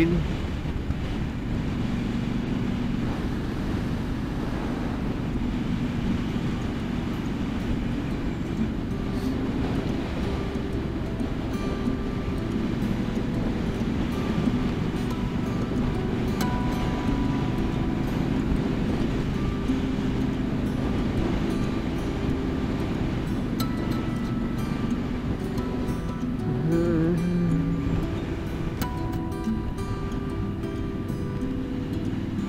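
A 2017 Triumph Street Scrambler's 900 cc parallel-twin engine running steadily at cruising speed, heard with wind rush from the rider's position.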